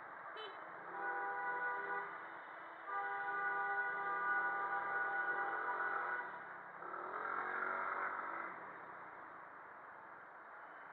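A vehicle horn held twice in congested street traffic, first for about a second, then for about three seconds, over a steady hiss of traffic and wind.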